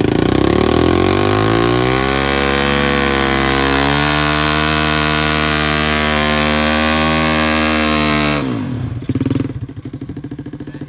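Small single-cylinder pit bike engine revving up over the first two seconds, then held at high revs for a burnout. Near the end the throttle is shut and the engine drops sharply back toward idle, with one short blip.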